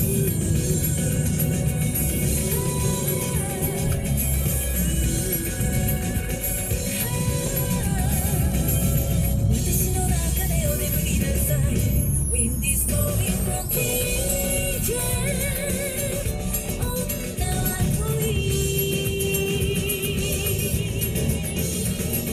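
Background music with a melody line that wavers in pitch, playing steadily throughout.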